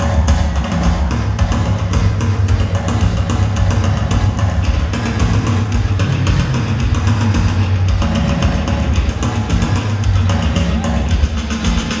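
Live synth-pop band playing: synthesizers over drums keeping a steady beat, with a heavy bass line.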